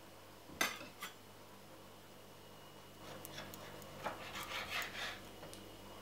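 Two sharp knocks about half a second in, then a kitchen knife sawing through a sandwich on a plastic chopping board in several quick strokes over about two and a half seconds.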